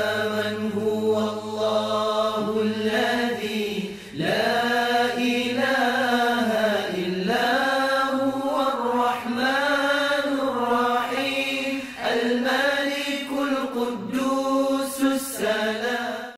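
A solo voice chanting in long, drawn-out melodic phrases, a religious chant, with brief breaths between phrases about four, seven and twelve seconds in.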